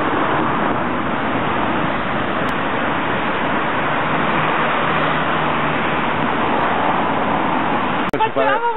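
Steady rushing noise of a running Range Rover (P38) idling at the roadside with thick smoke pouring from its open engine bay, together with street traffic. The engine runs at a constant level, with no revving.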